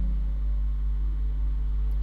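Steady low electrical hum, a few even low tones holding unchanged with nothing else over them.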